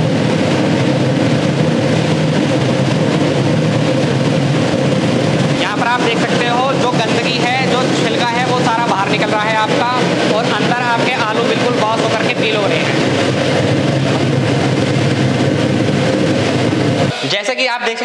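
Potato washing-and-peeling machine running with a batch of potatoes and water in its drum: a loud, steady motor hum with the load churning inside. The sound cuts off about a second before the end.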